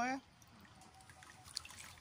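Faint liquid sloshing and dripping as a hand squeezes grated coconut in water in a metal wok, pressing out coconut milk, with a few soft splashes near the end.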